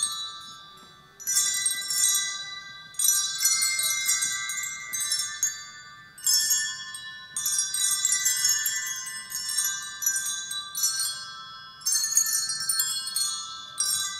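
A group of children playing a tune on colour-coded handbells. Notes are struck and left to ring so that they overlap, in short phrases that restart every second or few seconds, each fading a little before the next begins.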